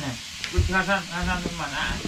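Voices talking over a steady sizzle of frying, with a short knock about half a second in.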